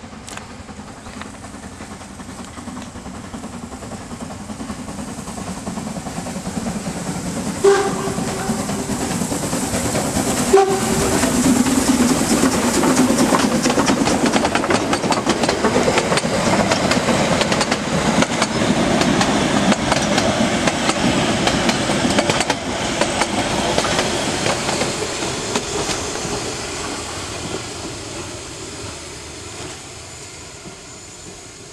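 HSB 99 7232, a metre-gauge 2-10-2T steam tank locomotive, running past under steam with its train, growing louder as it nears. It gives two short whistle blasts about 8 and 10½ seconds in, then the coaches roll past with the clicking of wheels over rail joints, fading toward the end.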